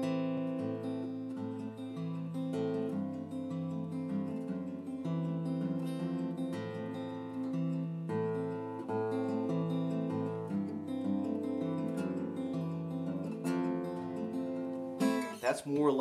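Steel-string acoustic guitar fingerpicked slowly in a repeating arpeggio pattern, its notes ringing over one another.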